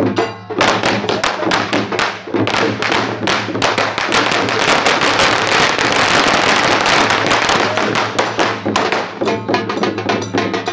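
Procession percussion: drums and metal cymbals beaten fast and loud, the strokes running together into a dense, continuous clatter through the middle of the stretch.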